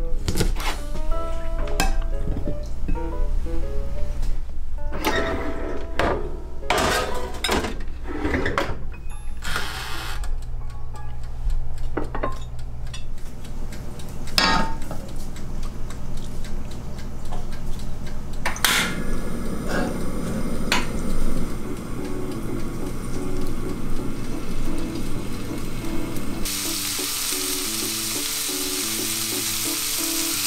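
Chef's knife slicing a sausage on a cutting board: a run of knocks against the board, over background music. Later there is one sharp click, and near the end a steady sizzle starts suddenly as shrimp go into hot oil in a square frying pan on a portable gas stove.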